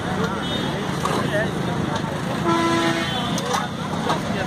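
Street noise with people's voices over traffic, and a vehicle horn sounding once, about half a second long, just past the middle.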